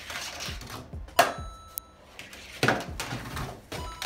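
Steel ball bearings rolling down a thin sheet-metal track and around a small model loop, with a sharp metallic clack about a second in and another near three seconds, each leaving a brief ringing.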